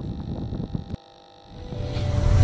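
Low rumble of outdoor field audio, wind on the camera microphone, with a few knocks. It cuts off about a second in. After a brief hush, a music swell of a logo sting rises near the end.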